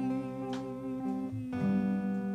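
Slow instrumental worship music: an acoustic guitar strummed over steady held chords, the chord changing about one and a half seconds in.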